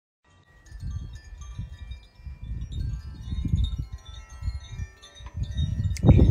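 Wind chimes ringing in the breeze, many overlapping clear tones sounding and fading, over an uneven low rumble on the microphone.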